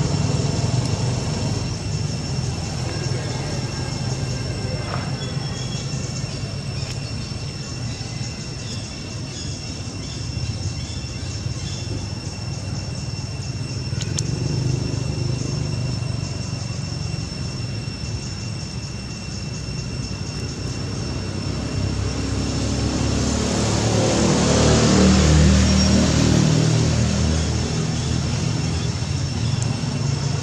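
Outdoor ambience of a steady low rumble with a thin, steady high whine. About 23 seconds in, an engine approaches, is loudest around 25 seconds, and fades: a vehicle passing by.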